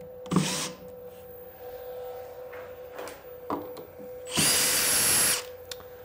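Makita cordless drill driving a screw into a plywood block, in short bursts: a brief one just after the start and a louder one of about a second near the middle, its motor whine rising as it spins up. A faint steady hum runs underneath.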